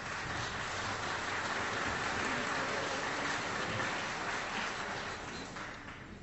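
Audience applause in a theatre, captured on an old reel-to-reel live recording; it swells up, holds, and fades near the end.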